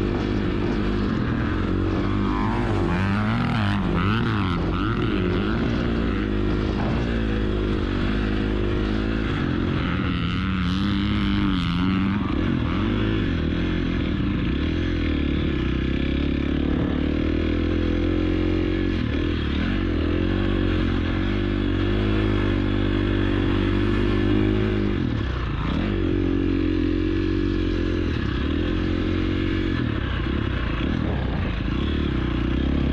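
KTM 350 SXF dirt bike's four-stroke single-cylinder engine running continuously under the rider, its pitch rising and falling again and again as the throttle is opened and rolled off.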